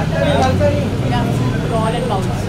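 Indistinct voices of photographers and onlookers calling out over a steady low hum.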